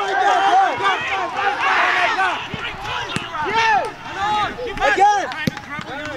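Several voices shouting and calling out, overlapping, with two brief sharp knocks, one midway and one near the end.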